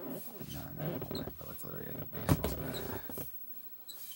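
Close-microphone handling noise as a wooden baseball bat is picked up and brought to the camera: rustling and scraping with one sharp knock a little over two seconds in, then it quietens.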